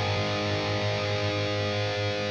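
Seven-string electric guitar played through the Fortin Nameless amp-sim plugin, a single chord held and ringing on steadily.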